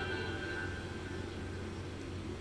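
The last faint notes of a song die away at the start, leaving quiet room tone with a steady low hum.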